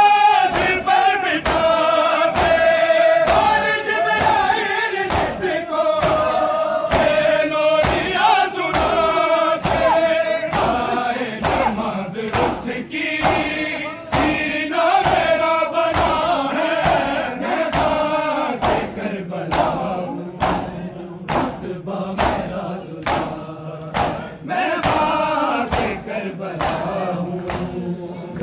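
A crowd of men chanting an Urdu noha in chorus over a steady beat of hands striking bare chests (matam), about three strikes every two seconds.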